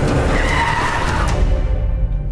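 A car's tyres skidding with a squeal for about a second, fading near the end into a low rumble.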